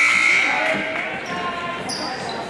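Basketball bouncing on a hardwood gym floor, a few dull knocks, with voices echoing in the hall. A high steady tone dies away in the first second.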